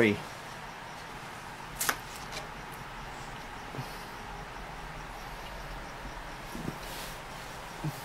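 Faint handling of a paper greeting card and a Christmas ornament over a steady low room hiss, with one sharp click about two seconds in and a few small knocks later.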